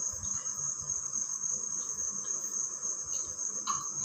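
Crickets trilling steadily on one high pitch in the background, with faint low bumps of someone moving about on a hard floor.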